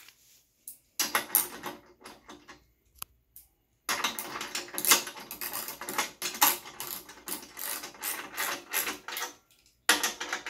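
Hand socket ratchet clicking in runs as the trainer's mainframe bolts are tightened: a short run about a second in, then a long run of strokes from about four seconds in until near the end.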